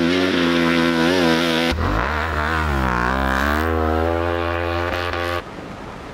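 Yamaha Ténéré 700's parallel-twin engine revving up and down as it is ridden off-road, its pitch rising and falling with the throttle. The engine sound drops away abruptly near the end.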